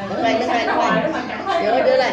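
Chatter: several voices talking at once, with no other sound standing out.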